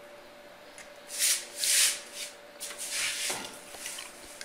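Handling noise: three short rubbing scrapes, the second the loudest, over a faint steady hum.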